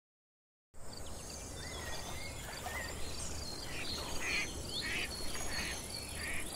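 Outdoor ambience of birds calling with short chirps and whistles, over a high chirp that repeats evenly like an insect's and a low rumble. The sound begins just under a second in.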